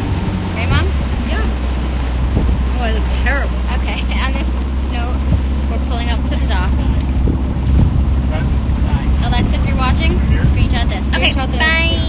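Small motorboat's engine running steadily underway, its low drone growing stronger about a second in, with wind buffeting the phone's microphone.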